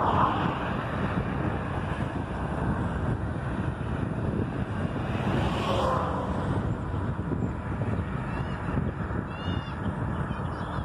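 Wind buffeting the microphone of a camera riding along on a moving bicycle, with a car passing close by at the start and another swell of passing traffic about six seconds in. A few short high chirps come near the end.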